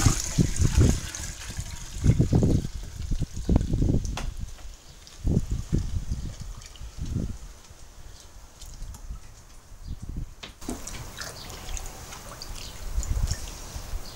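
Wort poured from a plastic bucket into a large aluminium boil pot, splashing into the wort already there in uneven surges. The pouring is heavier in the first few seconds and settles to a lighter, steadier flow later.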